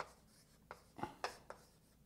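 Writing on a lecture board: about five short, sharp taps and strokes of the pen or chalk in two seconds.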